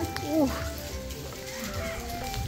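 Background music: a tune of held notes that step up and down, with a fast trill and arching, sliding notes.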